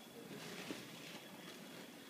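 Quiet room tone, with one faint tick about two-thirds of a second in.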